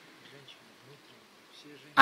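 Faint, wavering buzz of a flying insect.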